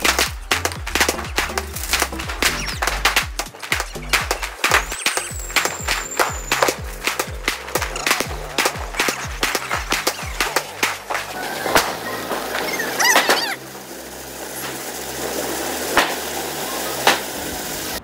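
A Diwali multi-shot firework cake going off: a rapid string of sharp bangs and crackles for about twelve seconds, thinning to a few scattered bangs near the end, with a short high whistle about five seconds in. Background music with a bass line runs underneath.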